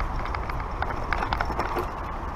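Mountain bike rolling over a rocky dirt trail: a steady low rumble from the tyres with irregular clicks and rattles as the bike jolts over rocks and roots.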